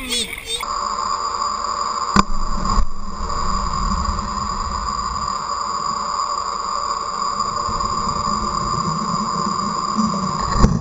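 Muffled underwater sound picked up by a camera in its waterproof housing: a steady hum with low rumbling, and two sharp knocks about two and three seconds in.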